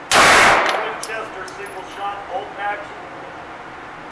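A single 9mm Glock pistol shot just at the start, with a short echoing decay off the walls of an indoor range.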